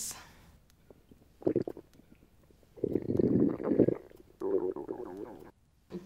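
Stomach rumbling and gurgling in three bursts, the loudest and longest in the middle, from a stomach that makes weird noises when gassy.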